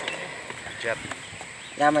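Low, steady outdoor background noise with no distinct event, broken by a brief voice sound about a second in and a spoken "ya" near the end.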